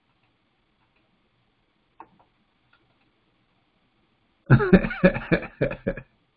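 Near silence with one faint click about two seconds in, then a man bursts out laughing in several loud pulses over the last second and a half.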